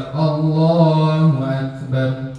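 A man's voice over a microphone drawing out one long, chant-like syllable at a nearly steady pitch for over a second, followed by a shorter syllable near the end.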